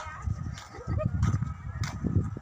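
Wind buffeting the phone's microphone, an irregular low rumble that grows stronger about a second in.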